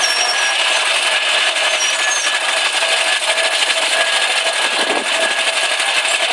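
Pre-1905 veteran car engine running as the car creeps along at walking pace, a loud, steady, rapid mechanical chatter.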